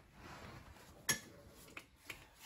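USB flash drive being pushed into a computer's USB port: a faint scraping rustle, then a sharp click about a second in and a lighter click near the end.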